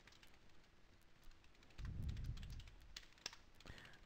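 Faint typing on a computer keyboard, scattered separate keystrokes, with a short low rumble about two seconds in.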